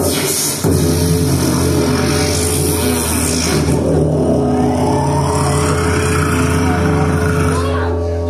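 Live band playing instrumental music: electric guitar and drums over a steady low drone, with a long rising glide through the second half.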